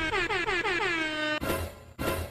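Edited-in electronic sound effect: a fast run of horn-like tones, each gliding down in pitch, about six a second, ending in a short noisy burst.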